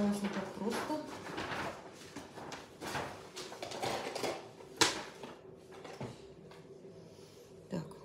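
Hands rummaging through items on a work desk while searching for scissors: rustling and handling noises with light knocks, and one sharp click a little past halfway.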